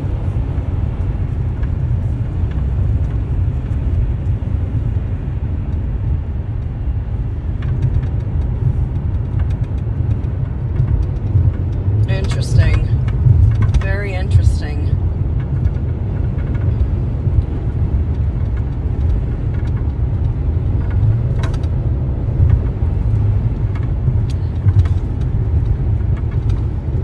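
Steady low road and engine rumble inside a moving car's cabin. A few brief, louder higher-pitched sounds come about halfway through.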